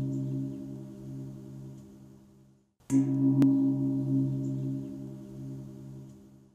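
A gong struck and left ringing, its low tone pulsing as it dies away. It is cut off suddenly and struck again about three seconds in, ringing down once more.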